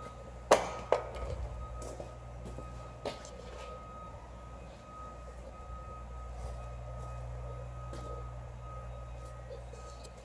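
Two sharp knocks in quick succession about half a second in, then a lighter knock near three seconds, from hard parts being handled on a shop floor, over a steady low hum and a faint steady high tone.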